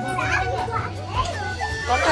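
Several children's voices shouting and chattering as they play, over background music.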